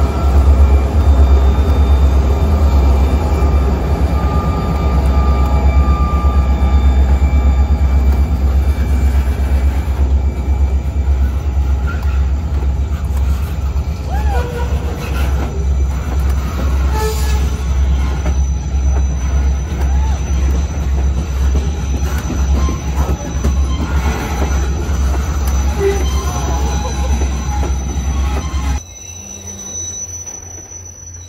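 CSX diesel freight train passing close by: the locomotive's engine at first, then a line of boxcars rolling past with a steady low rumble and a high, steady wheel squeal. The loud rumble drops off suddenly near the end.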